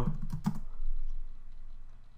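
Typing on a computer keyboard: a quick run of keystrokes in the first half second, then a few fainter key clicks as a short shell command is entered.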